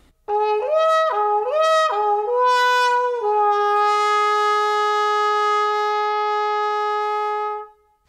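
Trumpet muted with a plumber's plunger, playing a short phrase of notes stepping up and down, then holding one long note for about four seconds that grows brighter before it stops near the end.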